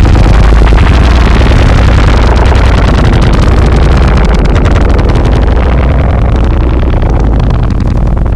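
Harsh analogue noise music: a loud, dense wall of distorted noise over a heavy low rumble, shot through with fast crackle, easing slightly toward the end.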